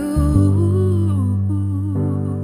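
Slow ballad passage: a wordless female vocal hum carrying a gliding melody over sustained string chords, with a chord change just after the start.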